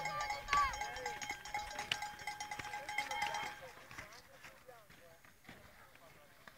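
Indistinct voices of people outdoors, with a steady high tone that stops about three and a half seconds in and scattered short clicks throughout; the sound gets quieter in the second half.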